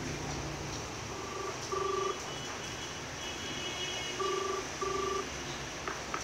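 Telephone ringing tone heard down the line: two British-style double rings, each a pair of short beeps, about three seconds apart, over a faint hiss. It is the call ringing out before it is answered.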